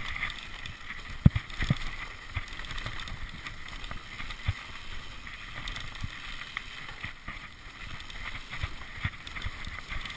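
Mountain bike ridden fast down a dirt and gravel trail: the tyres rumble over the ground and the bike rattles, with sharp knocks from bumps, the loudest about a second in. Wind rushes over the microphone throughout.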